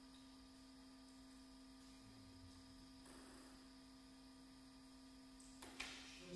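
Near silence: a steady low electrical hum, with a short sharp click near the end.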